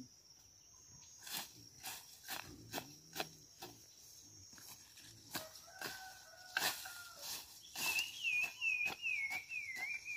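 Hoe blade chopping into wet soil, irregular strikes about one or two a second. Near the end a bird calls in a quick run of short repeated notes, over a steady high insect drone.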